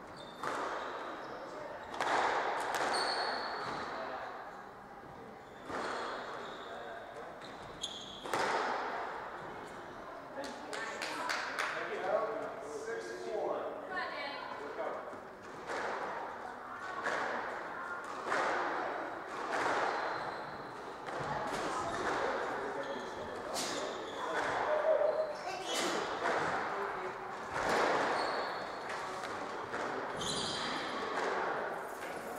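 Squash rally: the ball struck by rackets and smacking off the court walls and glass, a sharp crack every one to two seconds with echo, and short sneaker squeaks on the wooden floor.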